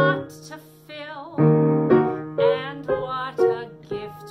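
Grand piano playing show-tune accompaniment, chords struck several times and left ringing. Between the chords a voice sings held notes with vibrato.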